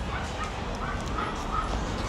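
Steady outdoor background noise with a few faint, short calls, a distant animal or voice.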